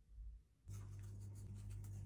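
Sugar poured from a measuring cup into a saucepan: a faint, dry, grainy rustle that starts suddenly about two-thirds of a second in, over a steady low hum.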